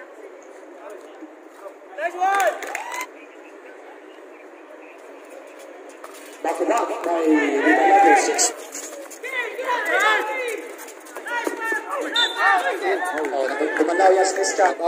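Players and spectators at a basketball game shouting and calling out. There is a short call about two seconds in, then louder overlapping shouts and calls from about six and a half seconds on.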